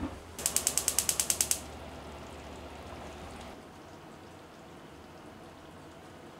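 Gas stove burner igniter clicking rapidly, about ten clicks in just over a second, then a soft hiss for about two seconds as the gas burns. A soft knock comes right at the start.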